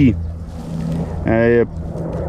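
A steady low motor drone, like an engine running nearby, easing off a little after the first second, with a man's short drawn-out "uh" of hesitation about a second and a half in.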